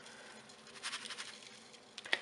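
Dry spice rub sprinkled from a paper plate, pattering faintly onto a raw pork shoulder in a bowl.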